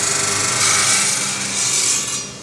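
Diamond disc saw cutting into a chunk of silicon: a loud, steady grinding hiss with a faint hum beneath, growing brighter and a little louder around the middle.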